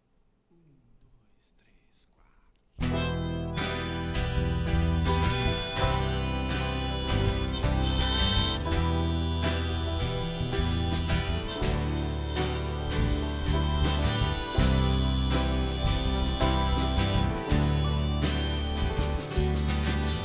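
Near silence for the first few seconds, then a small acoustic band starts abruptly about three seconds in and plays an instrumental introduction: harmonica over grand piano and acoustic guitar.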